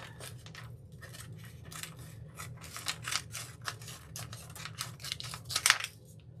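Scissors snipping through a thin decor transfer sheet in a run of short cuts, a few a second, the loudest snips near the end.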